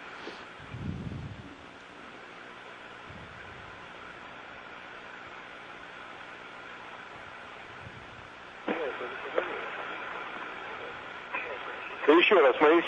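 Steady hiss of the space station's radio audio link, carrying the cabin's background noise. Faint, indistinct voices come in about three-quarters of the way through.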